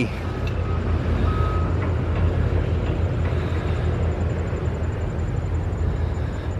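A motor running with a steady low rumble, with a short faint whine about a second and a half in.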